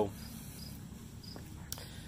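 Faint cricket chirping: short high-pitched pulses repeating several times a second over low background hiss, with a couple of faint clicks later on.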